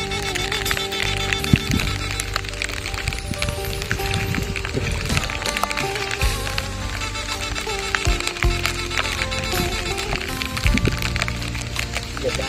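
Background music: an instrumental stretch of a song, with held melody notes over a steady bass line.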